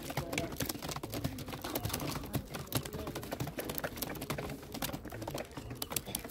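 Domestic pigeons pecking grain off brick paving: a fast, irregular patter of small clicks.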